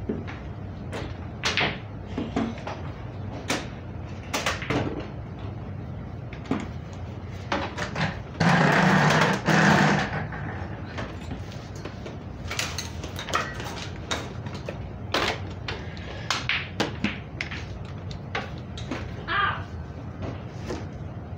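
Scattered knocks and clatter of things being handled, over a low steady hum. A little before the middle there is a loud burst of rushing noise lasting about two seconds.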